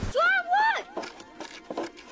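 A high-pitched voice crying out twice in quick succession, each cry rising and then falling in pitch.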